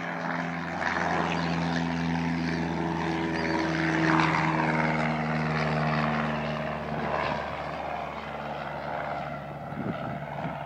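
Light single-engine propeller airplane running, its engine note shifting in pitch as it grows louder, loudest about four seconds in, then easing off.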